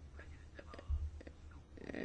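Faint, indistinct speech over a steady low hum, with a soft low thump about a second in.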